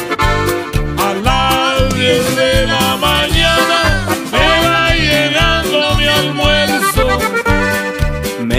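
Norteño music instrumental break: a button accordion carries the melody, with gliding runs, over a steady bass-and-drums beat.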